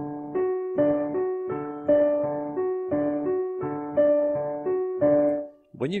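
Yamaha digital piano playing the ragtime syncopation exercise: a repeating off-beat figure of right-hand major-triad notes (third, octave, third, fifth, octave) over left-hand chords, in an even rhythm. It stops about five and a half seconds in.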